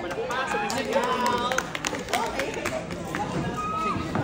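Several people talking over one another in a large studio, with sharp clicks and knocks scattered through it.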